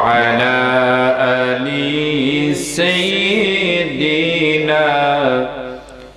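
A man's voice chanting a salawat (blessings on the Prophet Muhammad) in long, drawn-out melodic phrases, with a short breath pause just before the end.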